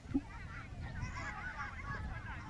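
Outdoor birds calling, many short overlapping chirps and calls, over a low rumble on the microphone, with one brief low knock just after the start.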